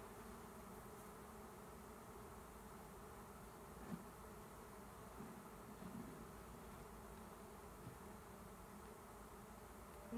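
Faint, steady buzzing of a swarm of honey bees.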